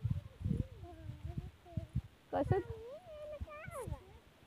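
Children's high-pitched voices calling faintly, in drawn-out, wavering calls, with low irregular thumps underneath.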